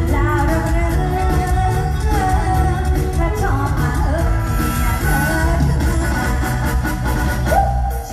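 Live Isan mor lam band music played loud through a PA, with a steady heavy bass beat under a singing voice.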